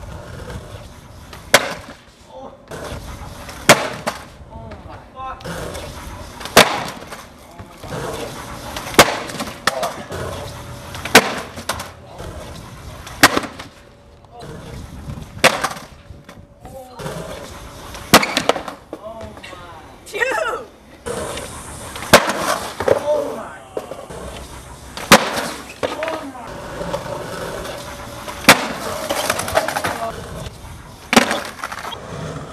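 Skateboard on concrete over repeated trick attempts: a sharp crack every couple of seconds as the tail pops and the board slaps down or clatters away, with wheels rolling on concrete between.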